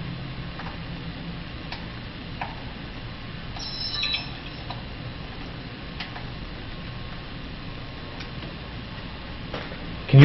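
Steady background hiss and low hum with a few faint scattered clicks, and a short rattle of high ticks about four seconds in.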